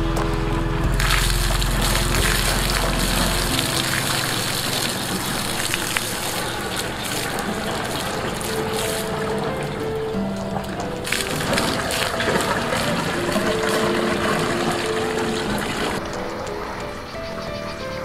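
Water poured from a plastic bucket into a vertical PVC pipe, splashing and gurgling as the pipe of a home-made drum pump is filled to prime it. The water comes in two long pours, the second stopping a couple of seconds before the end, over background music with held notes.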